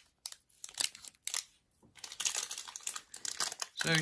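Foil booster-pack wrappers crinkling as they are handled: a few separate crackles at first, a short near-quiet pause, then a denser run of crinkling in the second half.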